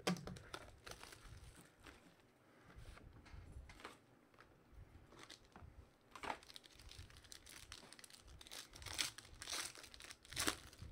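Foil trading-card pack crinkling as it is handled and then torn open, with scattered sharp crackles that grow thickest and loudest near the end.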